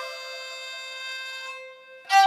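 Kamancheh, the Persian bowed spike fiddle, holding one soft sustained note that dies away near the end.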